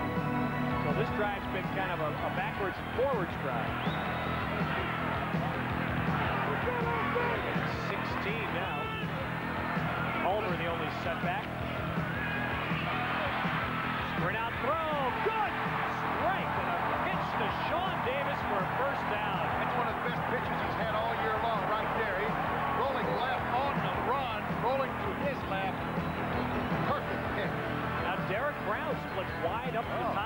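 Football stadium crowd noise: many voices shouting and cheering at once, over music with steady held notes.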